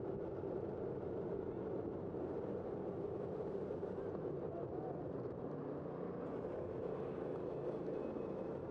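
Steady rushing noise of a bicycle ride on a city street, as picked up by a camera mounted on the moving bike: air moving past the microphone and tyres rolling on the pavement, with city traffic behind it.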